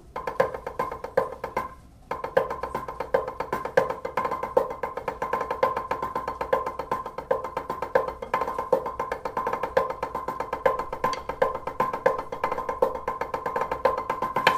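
Drumsticks playing a fast rudimental sticking figure on a drum practice pad: a dense run of accented strokes that breaks off briefly about two seconds in, then carries on without stopping.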